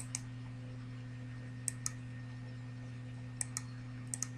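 A computer mouse clicked three times as a quick pair of clicks each time, about a second and a half apart, while units are placed in a process-simulation program. A steady low electrical hum runs underneath.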